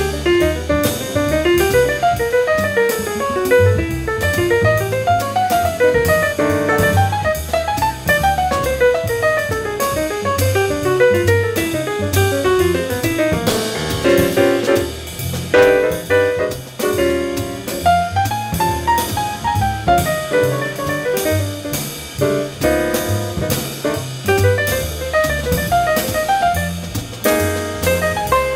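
Jazz quintet recording with tenor saxophone, trumpet, piano, double bass and drum kit. A fast improvised solo line runs up and down over walking bass and drums.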